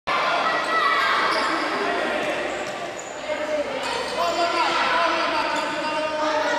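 Futsal ball kicked and bouncing on an indoor court, with children's and spectators' voices calling out. The echoing hall colours the sound.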